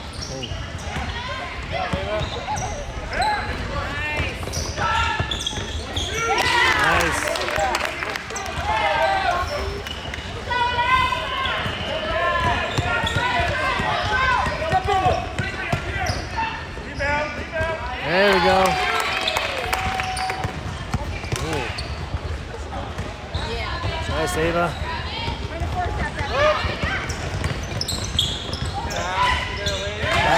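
Basketball game sounds: players and people courtside calling out, over a basketball bouncing on a hardwood court.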